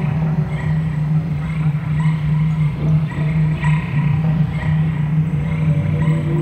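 Improvised experimental music: electric guitar and live electronics holding a loud, low, pulsing drone, with faint repeating ticks above it.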